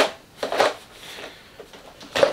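Plastic body shell of a Traxxas Rustler 4x4 RC truck being fitted down onto its chassis: a click about half a second in, then a faint brief rustle of plastic.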